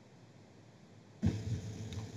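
Near silence on the call audio, then a little over a second in a soft thump and a low steady hum come in abruptly, the background sound of the call line opening up.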